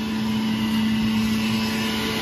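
Electric centrifugal juicer's motor running at a steady pitched hum while leafy greens are pushed down its feed chute.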